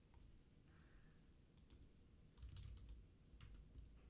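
Faint typing on a computer keyboard: a few scattered keystrokes with a short run about two and a half seconds in, as a new stock ticker symbol is entered into trading software. Otherwise near-silent room tone.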